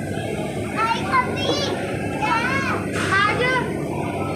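Children's high-pitched voices calling and squealing several times over a steady background din of children at play.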